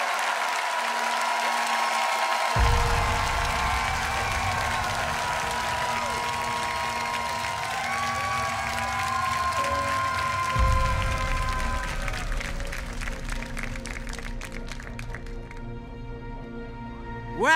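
Studio audience applauding and cheering over the show's background music. Near the end the applause thins into separate claps and fades.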